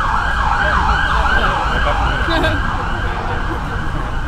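Emergency vehicle siren in yelp mode, a fast repeating swooping wail about three cycles a second, that stops about two and a half seconds in, over a low steady rumble.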